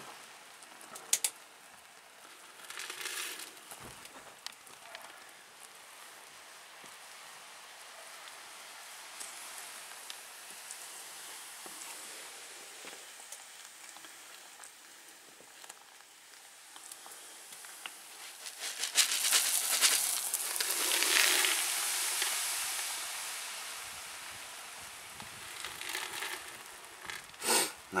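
Hot mixture of caustic soda solution and silica gel sizzling in a steel saucepan as it dissolves into sodium silicate, stirred with a wooden spoon. A few sharp clicks, and a louder rush of noise lasting a few seconds past the middle.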